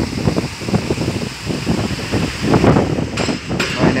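Wind buffeting the microphone in irregular gusts, with a few sharp clicks near the end.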